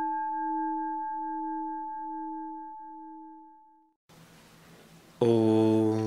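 A singing bowl, struck just before, ringing with a slowly pulsing low note and fading out over about four seconds. A man's voice then begins a sustained chant near the end.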